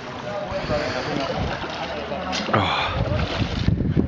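Pool water splashing and sloshing as a swimmer hauls herself out over the edge onto the concrete deck, with a louder burst of splashing and knocking about halfway through.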